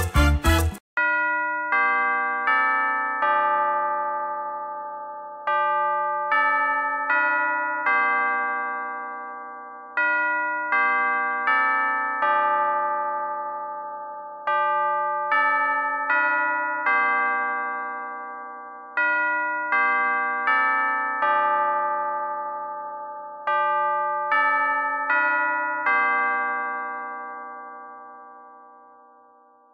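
Bell chime tones playing slow phrases of four notes, each note struck and left to ring and fade, a new phrase about every four and a half seconds. Other, busier music cuts off just under a second in.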